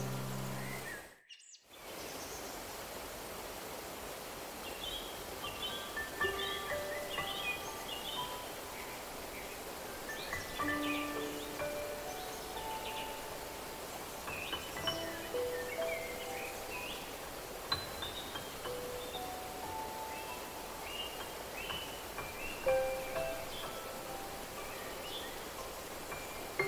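A held musical note fades out, then a moment of silence about a second in. After that comes a steady rush of flowing stream water, with birds chirping and slow, sparse bell-like chime notes stepping up and down.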